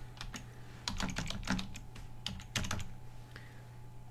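Computer keyboard typing: an irregular run of key clicks as a web address is typed, thinning out about three seconds in.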